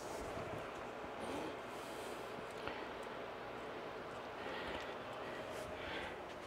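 Faint, soft scraping and handling of a spatula as it is wiped clean at a kitchen counter.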